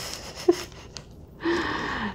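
A woman's short, breathy gasp near the end, as she strains to fit something into a small bag, with a brief sharp click about half a second in.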